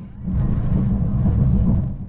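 Low, steady rumble of a Talgo high-speed train running at speed, heard from inside the carriage; it fades in just after the start and fades out near the end.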